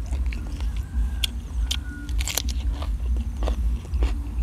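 Close-up crunchy chewing of a mouthful of golden apple snail salad and raw vegetable, with a few sharp crunches spread through the chewing.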